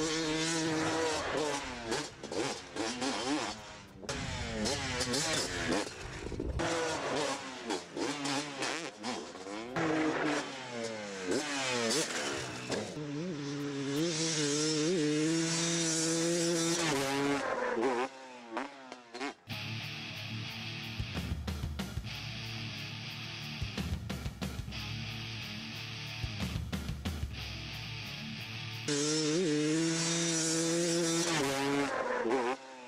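Dirt bike engine revving up and falling off again and again as the rider goes on and off the throttle, with the sound changing abruptly at cuts between shots.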